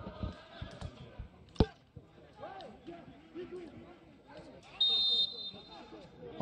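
In an empty football stadium, a single sharp thud of a ball being struck comes about one and a half seconds in, faint shouts from players follow, and near the end the referee gives a short, steady whistle blast.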